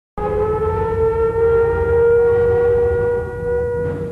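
Air-raid siren holding one steady wailing tone over a low rumble, starting abruptly.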